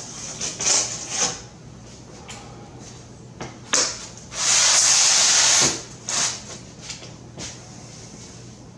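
Scraping of a hand tool and glass against the edge of an insulated glass unit. It comes in short rasping strokes, with one long, even scrape of over a second around the middle.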